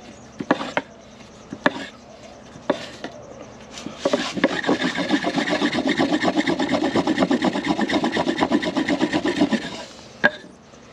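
Rudiger roll friction fire: a flat wooden block rubbed fast back and forth over a strand of rolled cotton on a wooden plank, making a rhythmic wooden rubbing of several strokes a second that lasts about six seconds and then stops. A few separate knocks come before it. The rolling heats the cotton by friction until it smoulders.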